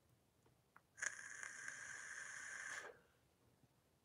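A man's faint breath, one long breath of about two seconds beginning about a second in. The rest is near silence.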